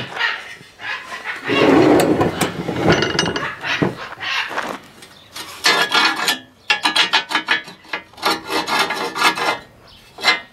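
Cast-iron sliding air damper on a wood-stove door worked back and forth by hand, metal grating on metal in a run of short scraping strokes through the second half. Before that, about two seconds in, a dense scraping rub from the cast-iron parts being handled.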